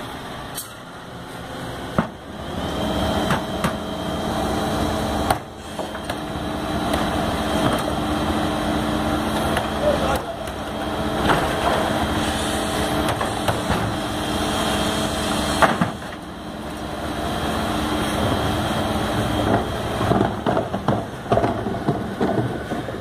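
FAUN Rotopress garbage truck's engine and hydraulics running up with a steady whine while the rear lift raises a wheelie bin and tips it into the spinning drum. A knock comes about two seconds in and a sharp clunk about two-thirds of the way through, when the whine stops.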